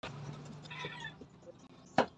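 A faint, drawn-out pitched call in the first second or so, then a single sharp click near the end.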